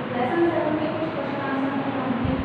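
A woman talking over a steady background hiss.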